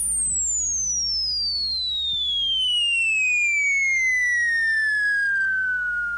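DJ-mix sound effect: a single whistle tone sliding steadily down in pitch, from very high to mid, over several seconds, with a low steady hum beneath it.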